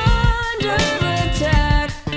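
A live band plays a soul-pop groove on drum kit with cymbals, electric bass, electric guitar and keys, with a melody line that glides in pitch over it. The band cuts out for a moment right at the end.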